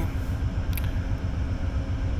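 Two GE P42DC diesel-electric locomotives idling at a standstill, the trailing unit running in head-end-power (HEP) mode, giving a steady low rumble with a faint steady hum above it.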